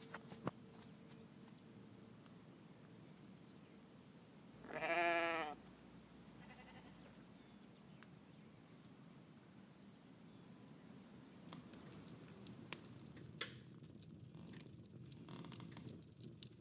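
A goat bleats once: a single quavering bleat about a second long, about five seconds in. Otherwise there is only a faint steady background hush.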